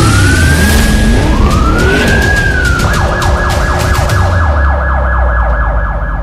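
Police siren sound effect: two rising wails, the second one falling away, then a fast yelping warble from about three seconds in. It plays over a deep bass rumble and a whooshing hiss.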